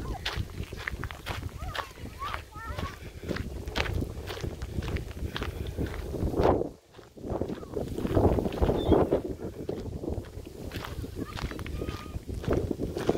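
Footsteps crunching on a gravel road at a walking pace, with wind rumbling on the microphone and children's voices calling in the distance.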